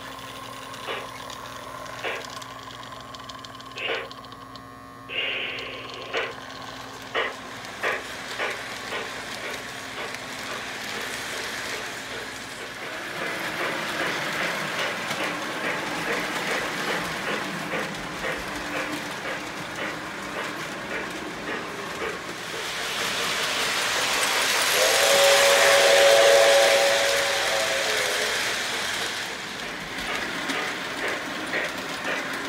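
The electronic RailSounds steam chuff of a 1989 Lionel Reading T-1 4-8-4 model locomotive as it pulls away, with separate chuffs about a second apart that quicken and then run together as the train gathers speed, along with the running noise of the wheels on the track. About 25 seconds in, the model's whistle blows for about three seconds, the loudest part.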